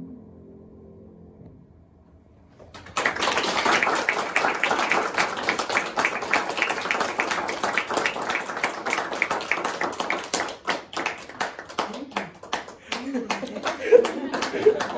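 The last held chord of the voices and piano fades away, and after a short hush a small audience breaks into applause about three seconds in. The clapping thins out to scattered claps near the end.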